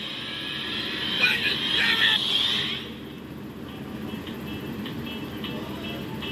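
Animated-film soundtrack played back through a device's speaker and re-recorded: music mixed with vehicle sound effects. It is fuller for the first three seconds, then drops quieter with faint, evenly spaced clicks.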